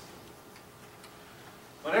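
A pause in a man's speech: quiet room tone with faint ticking. A man starts speaking again near the end.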